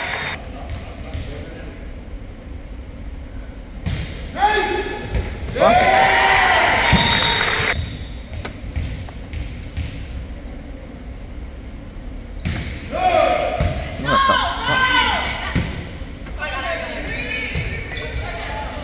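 Players and spectators shouting and cheering in a gymnasium between volleyball points, loudest for about two seconds a third of the way in, with a ball bouncing on the hardwood floor.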